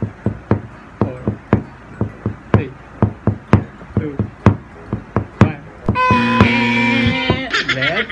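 A steady beat of sharp taps, about two a second, stopping about five and a half seconds in. A held steady tone follows for about a second and a half, then a voice starts to sing near the end.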